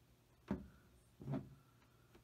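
Two soft knocks from a hand handling a plastic model starship on its stand: a sharp one about half a second in, then a duller, lower bump a little after a second.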